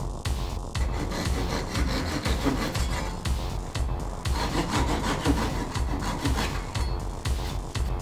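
A flush-cut hand saw rasps back and forth, trimming wooden dowel pins flush with an oak board. A sharp hammer tap on a dowel comes near the start. Background music with a steady beat plays underneath.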